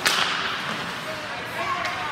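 One sharp crack of a hockey puck being struck, ringing out in the rink's echo, followed by two fainter clicks near the end.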